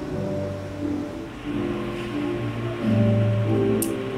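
Background drama score: soft sustained low chords that shift every second or so.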